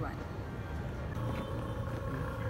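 A steady low rumble of background noise with a faint, even hum over it.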